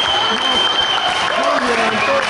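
Spectators in a gym hall clapping and shouting, many voices at once, with a long steady high-pitched tone held over the crowd noise.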